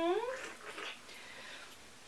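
A short hummed vocal sound whose pitch dips and then rises, ending about half a second in, followed by quiet room tone.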